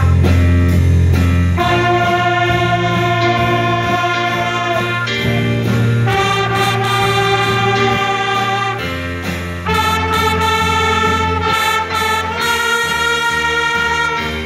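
Children's band with trumpets playing a tune in held notes that change every second or two, over a strong low bass part.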